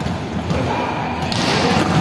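Volleyballs being hit and thudding on the court floor during serve practice in a large sports hall, with a brief hiss about one and a half seconds in.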